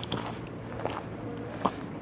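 Footsteps on loose dry dirt and rock, a few soft crunching steps about a second apart over faint steady background noise.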